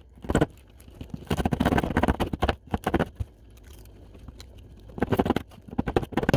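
Serrated knife sawing at the woody base of a pine cone, rapid rasping strokes in bursts: a dense run from about one to three seconds in, then a few more strokes near the end.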